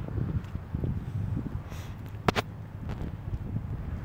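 Low wind noise on a handheld phone microphone with footsteps on pavement while walking, and a quick pair of sharp clicks a little past halfway.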